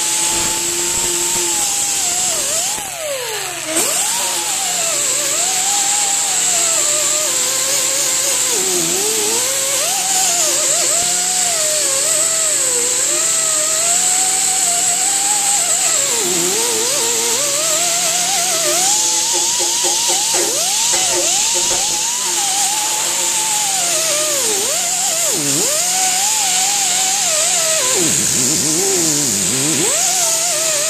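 A power tool's wire wheel brush scrubbing rust off a steel truck frame. The motor's whine sags and recovers in pitch as the wheel is pressed into the metal, over a steady high scratching hiss from the wires, with a brief let-up about three seconds in.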